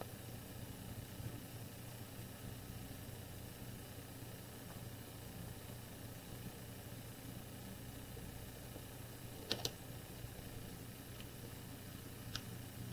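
Quiet room tone with a steady low hum, broken about three-quarters of the way through by two quick light clicks as a paper card panel is handled on a stamping platform.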